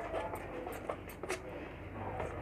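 A spoon stirring thick ground-lentil batter in a plastic bowl: soft wet scraping with a few irregular clicks of the spoon against the bowl.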